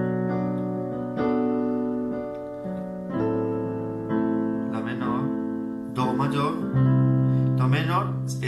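Electronic keyboard on a piano sound playing sustained chords, a new chord struck about every second, in a slow ballad progression in G major.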